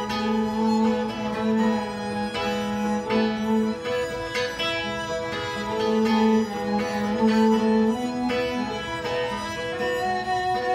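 Instrumental break of a live folk band: bowed fiddle carrying sustained melody notes over plucked guitar, with no singing.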